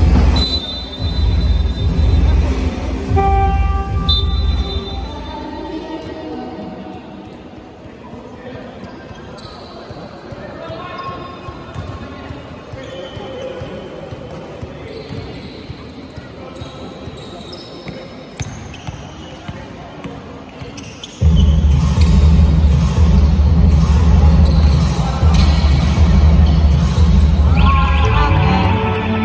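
A basketball bouncing on a hardwood court during play in a large hall, heard as scattered short knocks. Music with a heavy bass plays loudly at the start, fades out, and cuts back in suddenly about three quarters of the way through.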